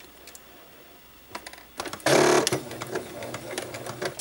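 Domestic electric sewing machine stitching a ribbon down onto fabric: a short fast run about halfway through, then slower, quieter stitching, with a few light clicks just before.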